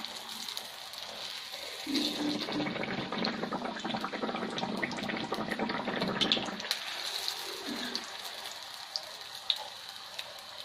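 Hot oil sizzling and crackling around a jaggery-and-rice-flour pitha deep-frying in a wok. It grows louder for a few seconds in the middle while a spatula works the cake in the oil, then settles back to a lighter sizzle.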